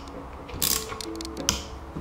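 Small hand driver ratcheting and clicking as screws are tightened into a metal throttle body: a short rasp about a third of the way in, a few light ticks, then a sharper click near the end.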